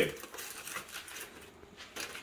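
Aluminium foil crinkling faintly and irregularly as a foil-wrapped taco is pulled open by hand.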